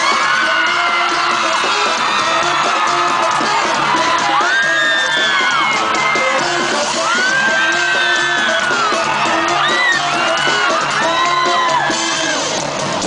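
Live pop concert music with a steady beat, heard through the sound system, with fans close by screaming and whooping in long, high cries over it.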